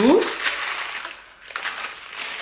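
Packaging of a small gift box being torn open by hand: a rough ripping noise lasting about a second, then a shorter spell of tearing near the end.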